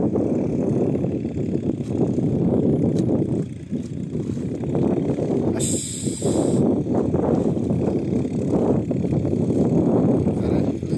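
Wind buffeting the microphone: a steady, fluctuating low rumble, with a brief hiss about six seconds in.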